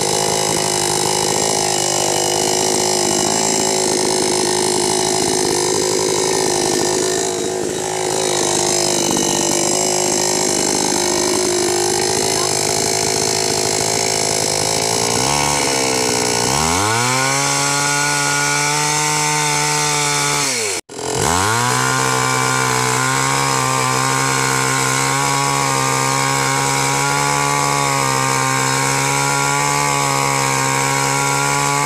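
Two-stroke gasoline chainsaw running at high revs. About halfway in, its pitch drops as the chain bites into the wood and the engine labours under load. It then keeps cutting at a steady lower pitch, with a momentary break about two-thirds in.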